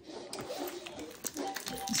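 Quiet background talking, with a few small clicks and taps in between.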